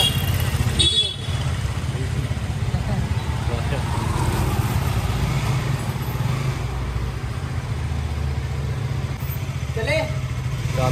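KTM RC sport bike's single-cylinder engine idling steadily with a low rumble.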